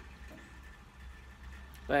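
Quiet pause with a steady low hum in the background; a man's voice starts a word right at the end.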